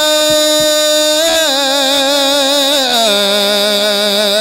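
Men chanting a khassida, a Mouride devotional poem in Arabic, holding one long drawn-out note with a slight wobble that steps down in pitch about a second in and again near three seconds.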